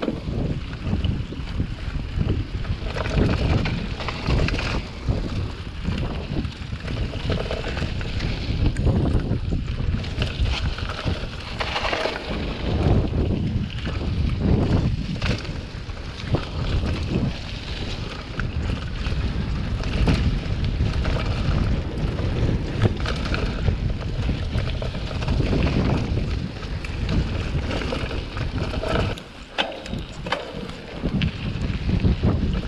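Wind rushing over an action camera's microphone while riding a hardtail cross-country mountain bike down a dirt trail, with a low rumble from the ride. The level rises and falls throughout and dips briefly near the end.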